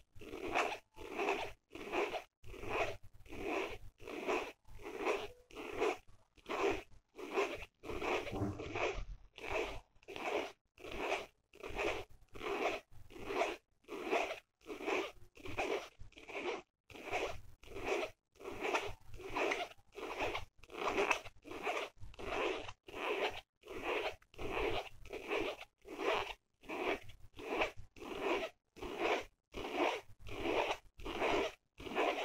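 Long fingernails scratching across the surface of a patterned case in quick, even strokes, about two a second without a break.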